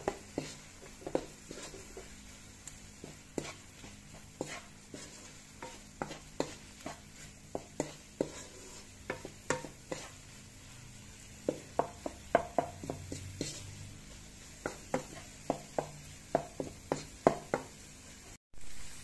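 Wooden spatula stirring diced pork and onion in a granite-coated frying pan, tapping and scraping against the pan in short, irregular knocks that come thicker in the second half. A faint sizzle of the meat frying runs underneath.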